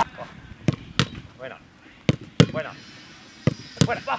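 Sharp thuds of footballs being struck in goalkeeper shot-stopping drills on artificial turf, coming in three pairs about a third of a second apart. A coach calls out briefly between them.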